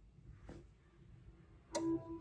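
A short chime from the MacBook Air about 1.7 s in, a steady tone with higher overtones, as the Finder file copy to the SSD finishes. Before it, only faint room tone and a light tick.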